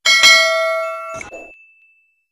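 A bright, metallic bell-like ding, the sound effect of a subscribe-button animation, struck at the start and ringing away over about a second and a half, with a short click about a second in.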